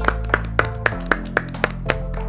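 Two or three people clapping, a quick run of about four claps a second, over a bed of light background music.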